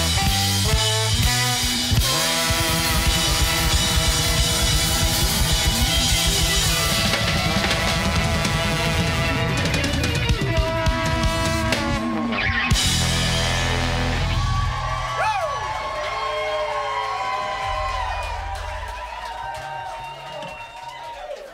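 Live band with saxophone, trombone, guitar and drum kit playing the song's closing section at full volume. About twelve seconds in the band breaks off briefly and crashes back in; then the drums stop and held notes ring out, fading toward the end.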